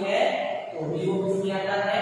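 A man speaking: only lecture speech is heard, with no other notable sound.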